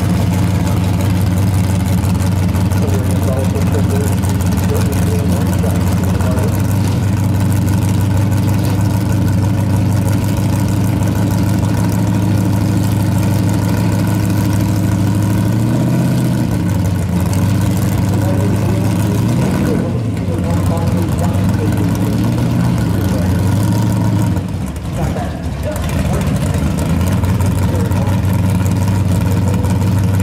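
First-generation Pontiac Firebird drag car's engine idling steadily. Its note wavers briefly a few times in the second half.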